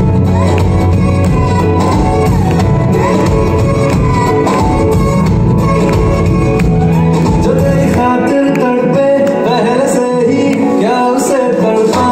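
Hindi film song playing loudly for a dance, a singing voice over the backing track; about two thirds of the way in the bass and beat drop out, leaving the voice and melody.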